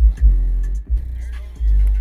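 Car stereo playing music with long, deep bass notes that start and stop abruptly.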